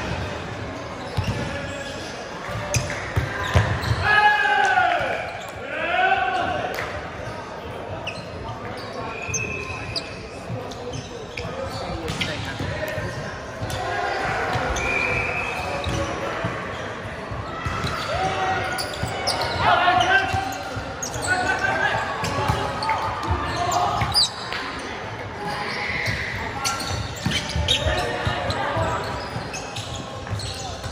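Indoor volleyball play echoing in a large hall: players' calls and shouts, sharp hits of the ball and feet on the hardwood court, and a few short whistle blasts.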